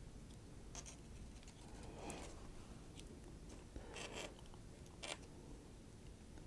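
Faint handling noises of a flat ribbon cable and a small circuit board being worked by fingers: a few short rustles and a light click.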